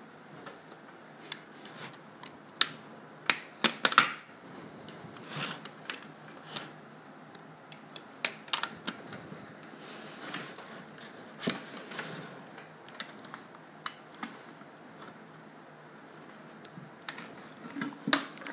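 Thin vacuum-formed plastic being cut with a utility knife and flexed on its mould, giving irregular clicks, snaps and short scrapes. The sharpest clicks cluster about three to four seconds in.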